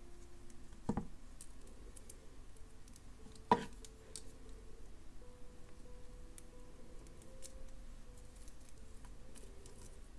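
Small metal clicks of jewelry pliers working a wire loop on a beaded eye-pin link, opening it and closing it onto the next link. Two sharper clicks, about a second in and at about three and a half seconds, with faint ticking between.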